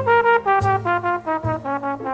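Jazz trombone playing a ballad melody as a quick run of about nine notes stepping mostly downward, with low accompanying notes underneath.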